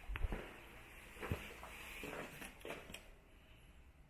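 Footsteps and a few light knocks and thumps while walking across hard flooring in an empty room. The loudest thump comes just after the start and another about a second later, with lighter clicks near the end.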